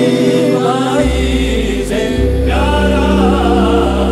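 Hindustani classical vocal music: voices sing a long, wavering, ornamented line over sustained keyboard chords. A deep bass note comes in about a second in.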